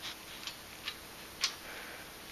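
Guinea pig nibbling a piece of lettuce from a hand: a few faint, crisp, irregular clicks, the loudest about one and a half seconds in.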